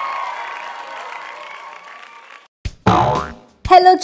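The intro jingle's last chord fades away over the first couple of seconds. Near the end a click and a short cartoon sound effect with a sliding pitch play, just before a voice says "Hello".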